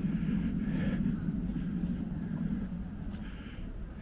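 Low, steady rumble of a road vehicle, fading gradually as it moves away.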